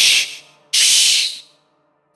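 Two hushing "shh" sounds, each lasting about half a second, with a short gap between them.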